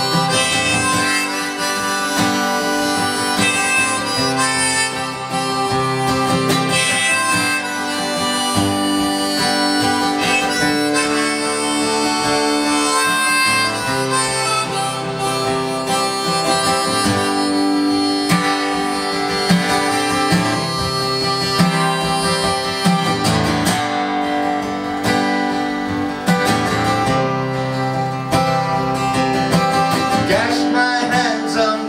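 Instrumental break in a live folk song: harmonica playing the melody in sustained notes over acoustic guitar accompaniment.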